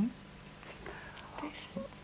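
A pause in conversation: quiet studio room tone with faint breaths and a soft murmur from the speaker before she goes on talking.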